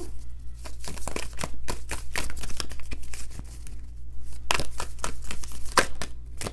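Round tarot cards being shuffled and spread out on a table: a run of quick papery rustles and light card-on-card snaps, sparser in the middle and busier again in the last second and a half, over a steady low hum.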